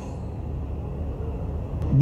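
Steady low background rumble of an open venue's ambience, picked up through the speech microphones, with no voice. There is one faint click near the end.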